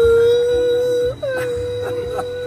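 A man's long held 'whoooo' yell on a roller coaster: one steady, drawn-out note that breaks off about a second in, then a second held note at about the same pitch, sliding down slightly as it starts.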